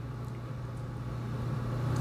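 Room tone in a pause between words: a steady low hum with a faint low rumble that grows a little louder toward the end.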